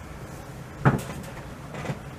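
A sharp knock about a second in, then a softer one near the end, over low room noise.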